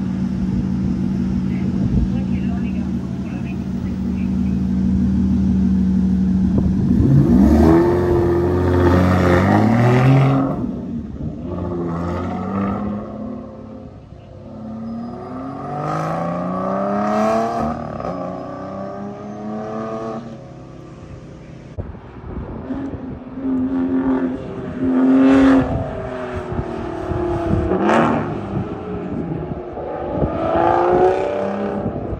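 Aston Martin sports car engines at a race circuit: a steady idle for the first several seconds, then repeated accelerations with the revs rising and dropping back at each gear change, loudest around eight to ten seconds in and again near the end.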